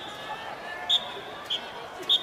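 Short, sharp, high-pitched strikes with a brief ring, about one a second, over faint crowd voices in a baseball cheering section.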